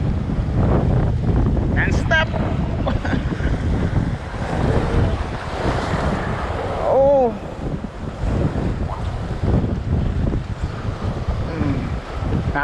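Wind buffeting the microphone over waves washing against a rocky shore, an uneven rumbling noise throughout, with a short call about seven seconds in.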